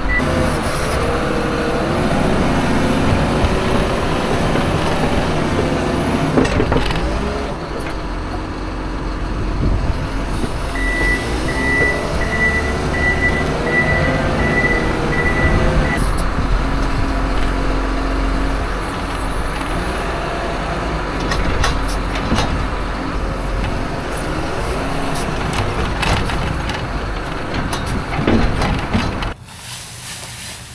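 John Deere loader's diesel engine running and revving up and down as the loader works its bucket. A reversing alarm beeps steadily for about five seconds midway. The engine sound cuts off suddenly near the end.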